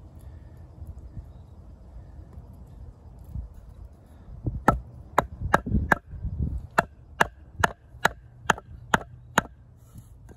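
A wooden baton strikes the spine of a Schrade Old Timer 169OT fixed-blade knife, driving the blade into a log to cut a V-notch. About halfway in comes a run of about a dozen sharp knocks, a little over two a second, after quieter handling of the knife and wood.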